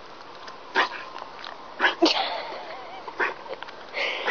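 Alaskan Malamute making a few short sniffs or huffs and a soft, wavering whine about halfway through, while begging for a treat.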